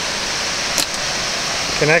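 Steady rushing of a creek's cascades, an even hiss of water, with one brief click a little under a second in.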